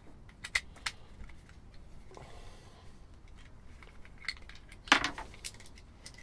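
A walkie-talkie's plastic casing and BNC socket being handled, giving a few sharp clicks and knocks of hard plastic and metal, the loudest about five seconds in.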